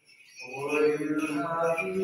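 Byzantine liturgical chant: male voices singing long held notes, starting about half a second in after a brief hush.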